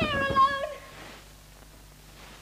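A young girl's high, drawn-out cry of distress that breaks off under a second in, leaving only a faint low hum from the old recording.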